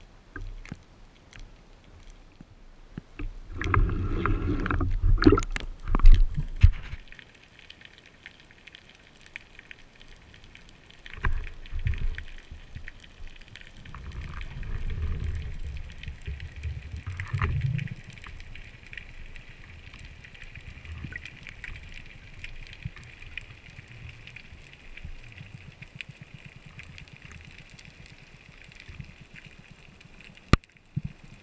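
A freediver's dive from the surface heard underwater through a camera housing: a loud stretch of splashing and rushing water for a few seconds near the start, then muffled water noise with low surges from fin strokes during the descent. Under it is a faint steady high whine.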